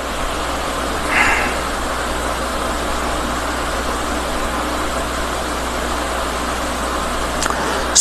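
Steady background hiss with a low hum underneath, the room or microphone noise of the recording while no one speaks; a faint brief sound, like a breath, about a second in.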